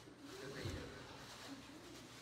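Faint, indistinct murmur of people talking quietly, with low voices coming and going.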